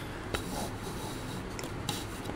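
Faint rubbing of a hand on notebook paper, with a light click about a third of a second in and another near the end, over a steady room hiss.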